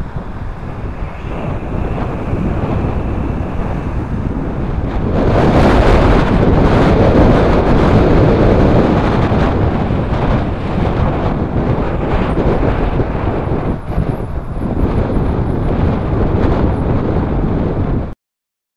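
Wind rushing over the microphone of a moving camera, mixed with traffic noise, growing louder about five seconds in. The sound cuts off suddenly at the end.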